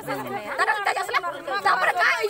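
Speech only: voices talking over one another.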